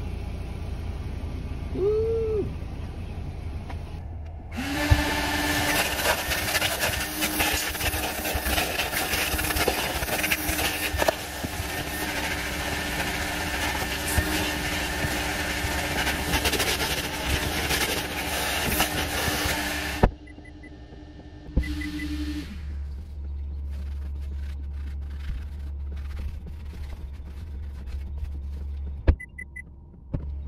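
Car wash vacuum starting up about five seconds in and running as a loud, steady rush of suction with a constant motor hum. The rush cuts off suddenly about twenty seconds in, and the hum carries on for about two seconds more.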